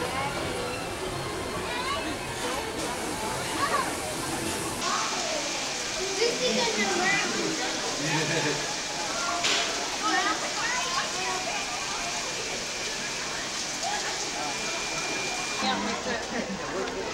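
Steady rain hiss that comes in suddenly about five seconds in, over the chatter of people's voices.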